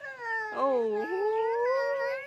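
A small child crying, with long drawn-out wails that waver in pitch.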